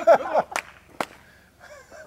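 A voice trailing off, then two sharp clicks about half a second apart.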